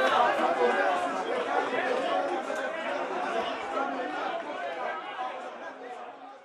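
Chatter of many people talking over one another, a small crowd's voices blending together, gradually fading out toward the end.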